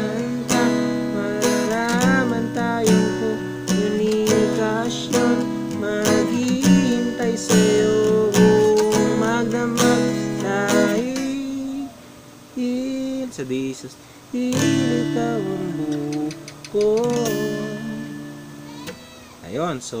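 Acoustic guitar strummed with a pick, playing the chord progression Bm7, C#m7 three times, then Dsus2 and Dm. About halfway through the strumming thins out and drops in level for a couple of seconds, then picks up again.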